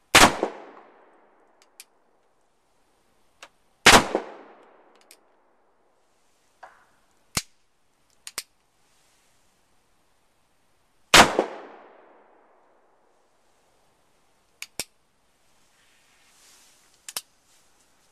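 Cap-and-ball black powder revolver firing three shots, each report loud and trailing off in a long echo, the first at once, the second about four seconds in and the third about eleven seconds in. Quieter sharp clicks, several in close pairs, come between and after the shots.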